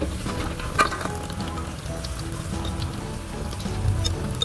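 Fritter batter frying in hot oil in a wok: a steady sizzle with small crackles, and one sharp click about a second in.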